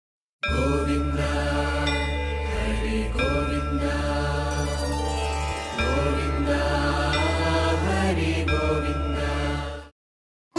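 Devotional intro music: mantra-style chanting over a steady low drone. It starts about half a second in and fades out just before the end.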